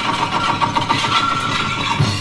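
A car engine running steadily with a rough note, part of a film soundtrack heard through a television's speaker.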